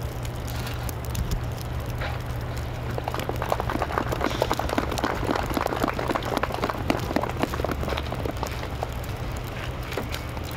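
Small crowd applauding, swelling about three seconds in and thinning out near the end, over a steady low rumble.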